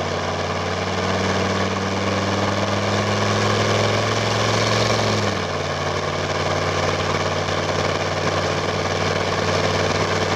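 1996 Chevy K1500's 6.5 L turbo diesel with straight exhaust pulling hard up a steep grade, its note climbing slowly in pitch. About five seconds in the pitch drops at once as the automatic transmission shifts up, then the engine pulls on steadily.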